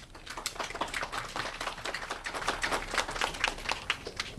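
Small audience applauding: a dense patter of separate hand claps.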